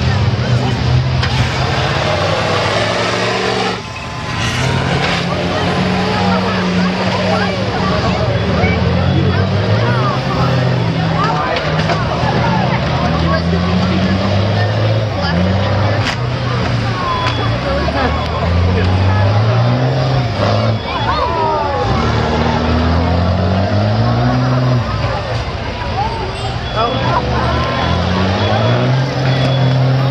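Several school bus engines running and revving together in a demolition derby, their pitch climbing and falling over and over as the buses push and ram each other. A sharp knock cuts through a few seconds in and another about halfway.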